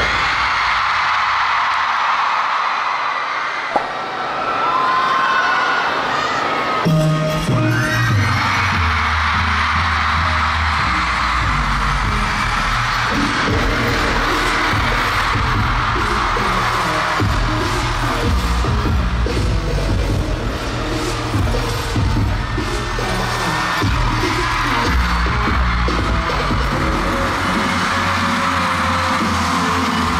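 An arena concert crowd screaming. From about seven seconds in, bass-heavy pulsing dance music for a stage performance comes in under the screaming.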